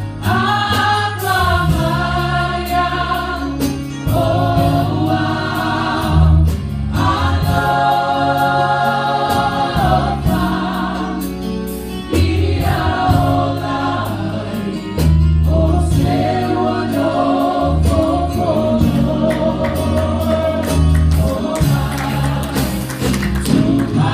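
A mixed church choir of women, men and children singing a gospel song in Samoan, backed by electric keyboard with sustained bass notes and a steady beat.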